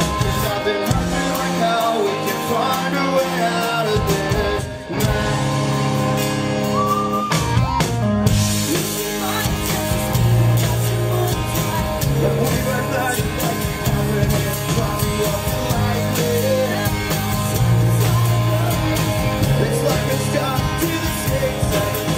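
Live rock band playing: guitars, drum kit and sung lead vocals. There is a brief drop about five seconds in, and about eight seconds in the band comes in fuller and brighter.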